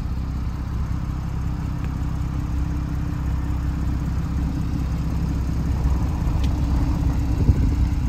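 Porsche 911 Carrera S (991.2) twin-turbo flat-six with sport exhaust idling steadily, a low even rumble.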